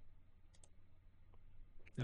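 Near silence with faint computer mouse clicks over a low steady hum: a close pair of clicks about half a second in as the menu item is selected, and a fainter tick near the end.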